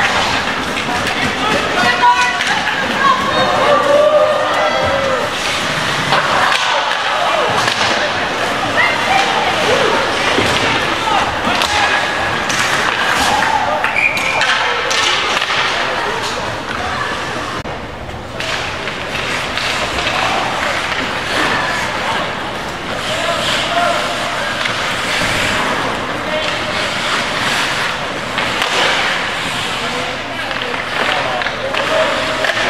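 Ice hockey game heard from the stands of an indoor rink: skates scraping the ice, sticks and puck clacking and thuds against the boards, under the shouts and chatter of players and spectators.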